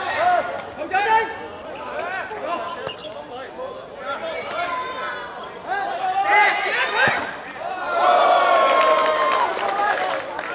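Men shouting on a football pitch during play, with one sharp knock about seven seconds in. A long, loud shout follows near the end as a goal is scored.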